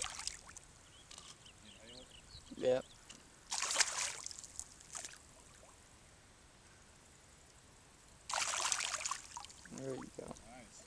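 Water splashing as a hooked striped bass thrashes at the surface while it is landed by hand in shallow river water: two short splashes, one about three and a half seconds in and another near the end.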